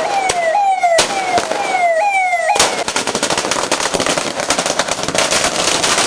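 A vehicle siren wailing, its pitch jumping up and sliding down about twice a second, with a few sharp cracks over it. About two and a half seconds in the siren stops and a string of firecrackers goes off in a rapid, continuous crackle.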